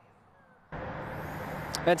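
Near silence, then about two-thirds of a second in, a steady hiss of freeway traffic cuts in suddenly.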